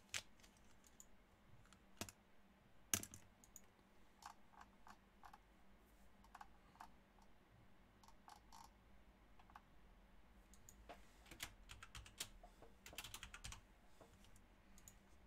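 Faint, scattered clicks of typing on a computer keyboard, a few single clicks at first and a quicker run of keystrokes near the end.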